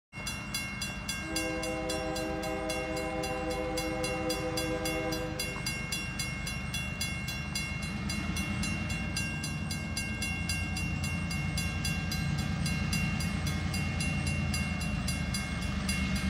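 A diesel freight locomotive's horn sounds one long chord about a second in, held for about four seconds, over the low rumble of the approaching locomotive, which slowly grows louder. A level crossing bell rings steadily and evenly throughout.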